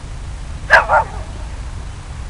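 A dog barking twice in quick succession, short and loud, close to the microphone.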